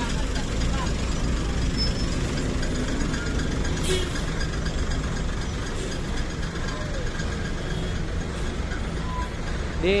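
Diesel engine of an intercity coach running as the bus rolls slowly past close by, a steady low rumble, with a short hiss about four seconds in.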